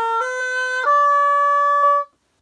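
Oboe playing three ascending notes, B flat, C and D, slurred one into the next; the D is held longest and then stops.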